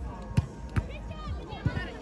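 Volleyball being struck by hands and forearms: two sharp slaps about half a second apart in the first second, then players' voices calling out.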